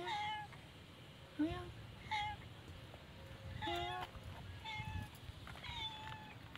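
A cat meowing repeatedly: a run of short meows, a little more than one a second, some lower and some higher in pitch.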